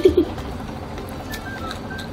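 Two short, low cooing hums from a child's voice right at the start, followed by faint background music.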